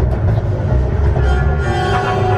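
Hogwarts Express ride train rumbling along in motion, with orchestral soundtrack music playing over it.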